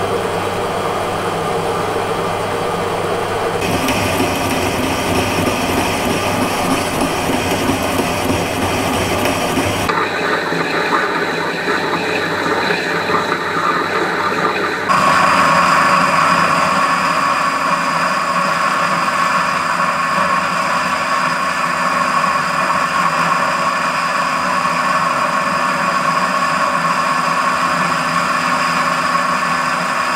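Metal lathe running under cut on a steel workpiece: a drill cutting in from the tailstock, then a boring bar cutting inside the bore. The sound changes abruptly three times, the last about halfway through, after which a steady higher tone stands out.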